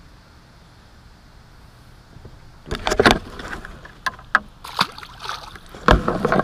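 Knocks and clatter on an aluminum fishing boat, in an irregular run starting a little under three seconds in, after a stretch of faint steady background hiss.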